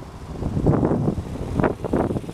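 Wind buffeting the microphone in uneven gusts, with two stronger gusts about two-thirds of a second and a second and a half in.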